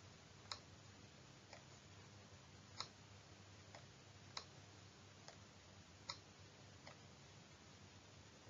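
Faint, short clicks, about eight of them at irregular spacing of roughly one a second, over near-silent room tone: the clicking of the pointer used to draw annotation strokes on the slide.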